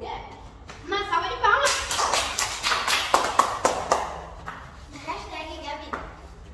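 A quick run of hand claps, roughly six a second for about two seconds, between bursts of girls' voices.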